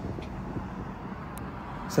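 Outdoor background noise: a low, steady rumble with wind on the microphone and a faint click about halfway through.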